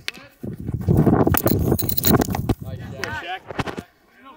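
Rustling and scuffing on a body-worn microphone as the wearer moves, with a run of sharp clicks, lasting about two seconds, followed by a brief voice.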